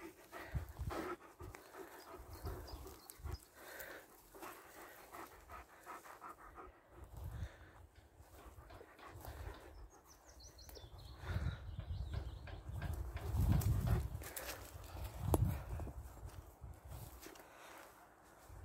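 A German Shepherd dog panting, with irregular dull low thumps of walking and handling, loudest about three-quarters of the way through.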